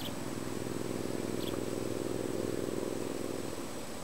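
A distant motor vehicle's engine running, a low buzzing hum that swells and then fades away before the end.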